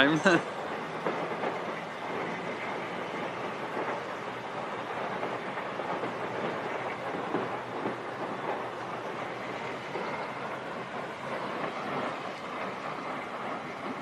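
Steady noisy din with faint irregular crackles, from a distant burning building in which fireworks are going off.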